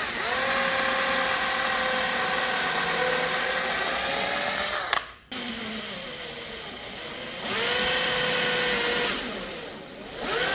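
Electric drill with a twist bit boring pilot holes into a softwood board, the motor whining steadily under load. It stops sharply about five seconds in, runs more quietly for a moment, picks up again, then winds down near the end.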